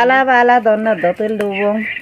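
A person's voice, with long, level held pitches.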